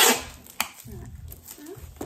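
Cardboard shipping package being handled and worked open: a loud scraping rustle at the start, then a sharp knock about half a second later, followed by quieter handling noise.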